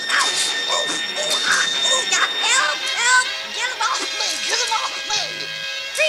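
Cartoon soundtrack: music with held tones under a jumble of many short, gliding, squeaky voice cries.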